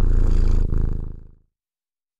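An elderly domestic cat purring loudly, a rapid low pulsing that stops abruptly about one and a half seconds in.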